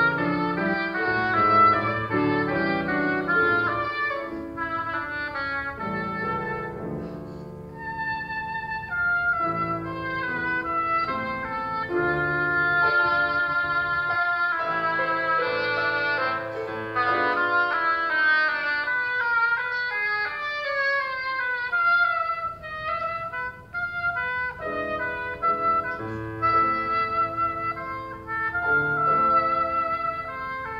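Oboe playing a classical solo melody over grand piano accompaniment, moving between held notes and quicker passages that fall in pitch.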